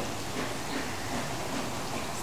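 A steady, even hiss of background noise, like running water or rain, with no distinct events.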